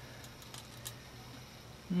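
A few faint clicks of a retractable tape measure being pulled out and held in place, over a low steady hum. Near the end a man hums 'mm'.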